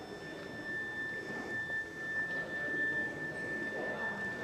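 A steady high-pitched electronic tone, held at one pitch and sounding over faint room noise in a large chamber. It is taken, half in jest, for the presiding officer signalling that the speaker's time is up and cutting off his microphone.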